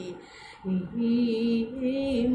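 A woman singing Carnatic vocal music. She breaks off briefly near the start for a breath, then resumes with long held notes.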